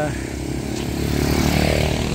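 A motor vehicle engine running steadily close by, with a passing engine noise swelling through the second second.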